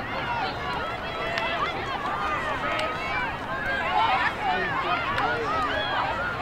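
Many overlapping high-pitched voices calling and shouting across an open playing field, players and onlookers at a girls' lacrosse game, with no single voice standing out. A steady low noise runs underneath.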